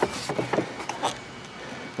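Faint scraping and a few light clicks as a red plastic dipstick cap is worked in the mower engine's dipstick tube, the dipstick refusing to go back in.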